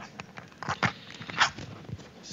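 Short breathy laughs from a few people, with knocks and rustles of a handheld microphone being handled.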